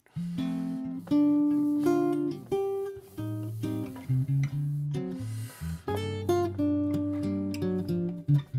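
Guild archtop jazz guitar improvising a chord-melody line: melody notes move over bass notes and chords that are held underneath.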